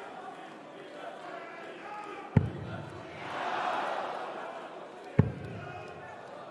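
Two darts striking a Winmau bristle dartboard, two sharp thuds about three seconds apart. Arena crowd noise runs underneath and swells briefly after the first dart lands.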